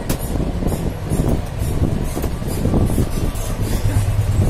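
Steady low rumble with scattered light clicks and scrapes of a screwdriver working screws into the copier's sheet-metal frame.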